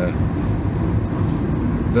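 Steady low rumble of a vehicle heard from inside its cabin.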